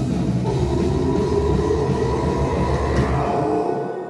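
Live rock band with distorted electric guitars and bass playing a dense droning noise wash, with several held ringing tones over a heavy low rumble. It dies down near the end, leaving faint lingering tones.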